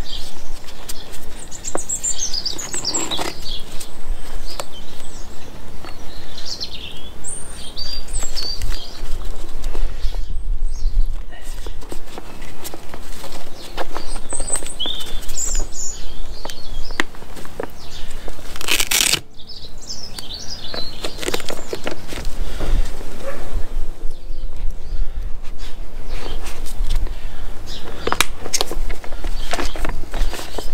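Rustling and clicking of a waterproof Ortlieb frame bag's fabric, straps and plastic fasteners being handled and fastened around a bicycle's top tube, with one sharp click about two-thirds of the way through. Birds chirp now and then over a steady low rumble.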